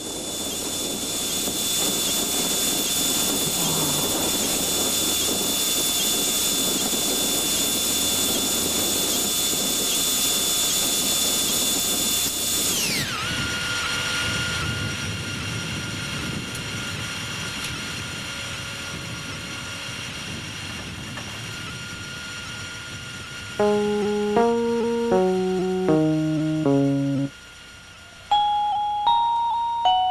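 Synthesized sci-fi sound effects on an electronic soundtrack: a noisy engine-like rumble with a steady high whine that glides down in pitch about 13 seconds in and settles into a quieter hum. From about 24 seconds a run of short electronic beeping notes steps downward in pitch, with a brief gap near the end before more notes follow.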